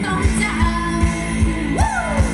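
Live Thai ramwong dance band playing, with singing over a steady drum beat.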